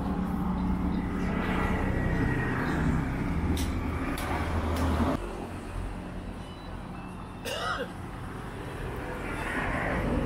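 A low, steady background rumble of engine-like noise with faint voices and a few sharp clicks near the middle; the rumble drops abruptly about five seconds in.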